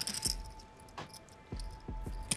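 A few short, soft clicks of clay poker chips being handled at the table, over a faint steady hum.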